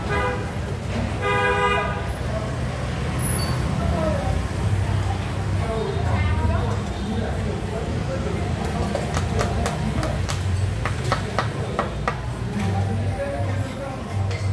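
A vehicle horn toots twice in quick succession near the start, then steady street traffic follows, with the rumble of passing motorbike engines.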